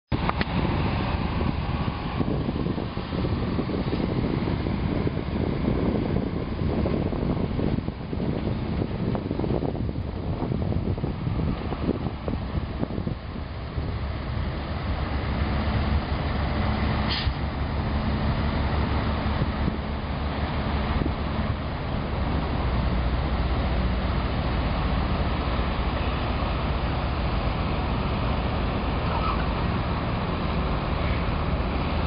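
Steady rumble of road traffic heard from above, with a single short click about halfway through.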